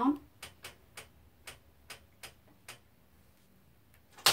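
Quilting frame's take-up roller being turned slowly, its ratchet giving a series of short, sharp clicks about two a second that stop about three seconds in.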